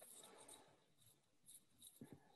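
Near silence: faint room noise.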